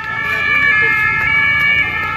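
A siren sounding in the street: several steady high tones held together, stepping slightly in pitch twice, over faint crowd voices.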